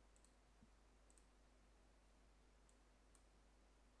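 Near silence with a few faint computer mouse clicks, some in quick pairs, as a resolution is picked from a menu.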